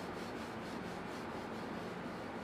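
Rubbing on a whiteboard as marker writing is wiped off, in quick repeated back-and-forth strokes.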